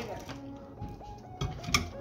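Soft background music, with two sharp clicks about a second and a half in as a plate is set down on a microwave's glass turntable.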